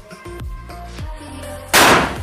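A small match-style water-bomb firecracker going off under water in a steel plate: one sharp, very loud bang about 1.7 s in, throwing up a spray of water. The bang shows the cracker stays lit and explodes even when submerged.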